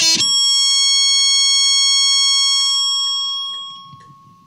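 Distorted electric guitar on a Jackson ends a fast heavy metal solo run with one high note that is held, ringing steadily, then fades out near the end.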